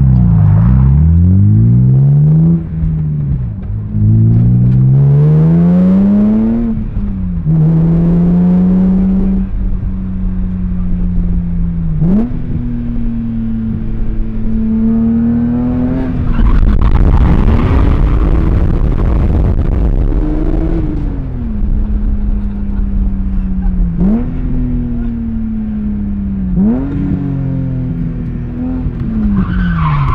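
BMW E90 M3's S65 V8 heard from inside the cabin, revving hard through the gears. The pitch climbs and drops back at each shift several times in the first seven seconds, then holds mostly steady at cruise with short pulls and lifts.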